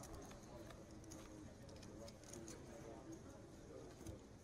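Quiet card-room ambience at a poker table: a faint murmur of voices with a few light clicks.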